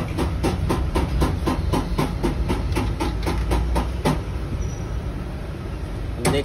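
Quick, even clicking, about four clicks a second, from a T-handle socket wrench being worked on the top bolt of a scooter's front fork tube, over a steady low hum. The clicking thins out after about four seconds.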